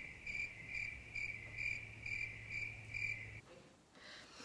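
Steady, rhythmic high-pitched chirping, about two chirps a second, that stops suddenly about three and a half seconds in.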